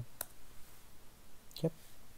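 A single sharp computer keyboard keystroke, the Enter key pressed to run the Python script.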